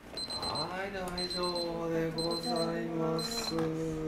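Electronic timer or alarm beeping at a high pitch in quick groups, about one group a second, four times. Under it, a person's voice holds low, drawn-out tones.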